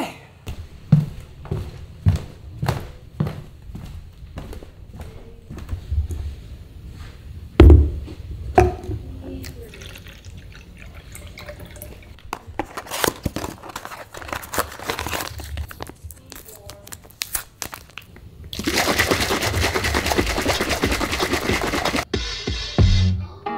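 Scattered knocks and clicks of things being handled in a room, with one heavy thump about eight seconds in, then a steady rushing noise for the last three or four seconds.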